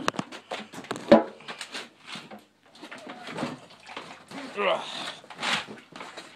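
Handling knocks and clatter as a camera is set down and things in a cramped shed are shifted to get a dirt bike out, with one loud knock about a second in. A short indistinct voice sound comes near the five-second mark.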